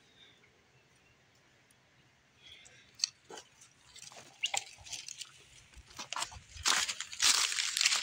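Near silence for the first couple of seconds, then dry leaf litter and twigs crunching and crackling underfoot in irregular bursts that grow louder, loudest near the end.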